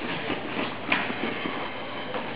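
Faint footsteps and shuffling on a gym floor mat over steady room noise, with one sharper tap about a second in.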